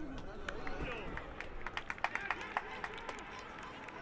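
Footballers shouting on the pitch during play, with a quick run of sharp clicks or claps between about one and a half and two and a half seconds in.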